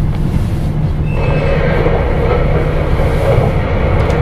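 In-cabin running noise of a KiHa 281 series diesel express railcar: a steady low rumble, with a fainter higher hiss joining about a second in.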